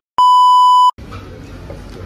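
A steady, high-pitched test-tone beep of the kind played over television colour bars, lasting under a second and cut off sharply with a moment of silence on either side, used as an editing sound effect. Low background room noise follows.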